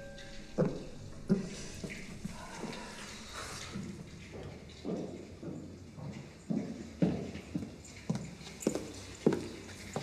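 Footsteps: a couple of sharp clicking steps early, then a steady walk of about two steps a second in the second half, drawing closer.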